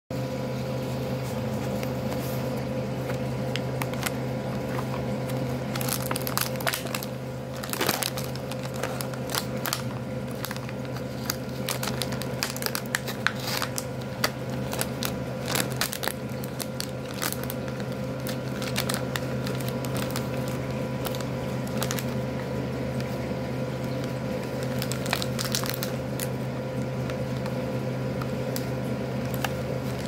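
Plastic snack-kit packaging crinkling and crackling as it is handled and its film lid is peeled back from the tray, in irregular bursts of small crackles. A steady low hum runs underneath.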